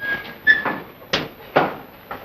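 Two short high-pitched tones, then two sharp clunks less than half a second apart, about halfway through: a car door being worked.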